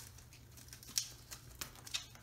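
Light handling noise of a rifle and its sling being moved: scattered soft rustles and small clicks, with a sharper click about a second in and another near the end.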